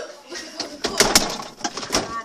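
Handling knocks and clatter as a camera is pushed in among plastic fridge shelves and containers, with a quick cluster of sharp knocks about a second in.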